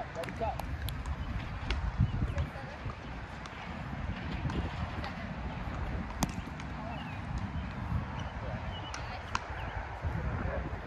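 Low, fluttering rumble with faint distant voices, broken by scattered sharp clicks or knocks, the loudest about two and six seconds in.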